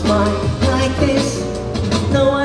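Pop song played through stage PA speakers: a man singing into a handheld microphone over a backing track with a strong bass line.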